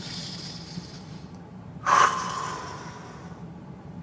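A man's deep breath during a yoga breathing exercise: a faint drawn-in breath, then a sudden, loud breathy exhale about two seconds in that tails off over a second or so.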